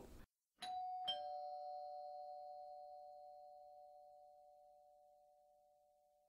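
Two-tone doorbell chime: a higher 'ding' and then a lower 'dong' about half a second later, both ringing on and fading away over about four seconds.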